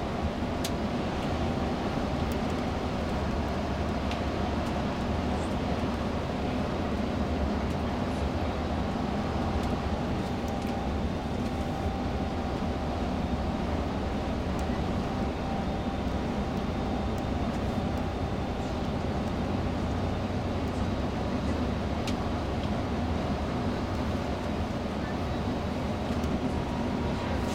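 Steady engine and road noise from a moving tour coach, heard from inside the cabin.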